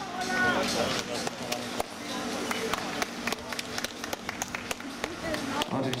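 Scattered clapping from a small outdoor crowd, irregular claps rather than a dense roar of applause, with people talking in the background.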